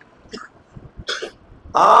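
A man briefly clearing his throat close to a microphone: two short sounds about a second apart in a lull, then his speech resumes near the end.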